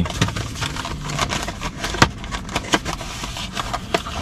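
Crackling, scraping handling noise from a cardboard bakery box and a crunchy cinnamon roll being pulled apart by hand, with a sharp click about two seconds in.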